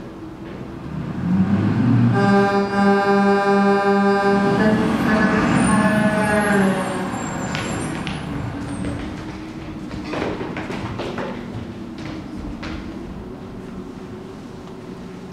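Truck-arrival sound effect: an engine rumble builds, then a truck horn sounds for about four and a half seconds, pulsing and stepping slightly higher halfway through. A lower rumble with a few knocks follows.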